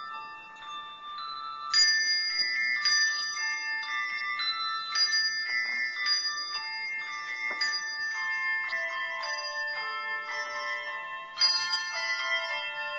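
Handbell choir playing a piece: overlapping bell notes struck in turn and ringing on. Loud full chords come about two seconds in and again near the end.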